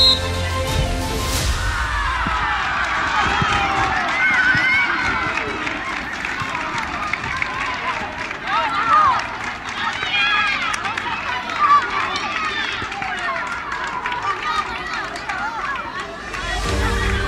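Footballers and supporters shouting and screaming excitedly in celebration of a goal: many overlapping high-pitched yells rising and falling. Music fades out in the first second or two.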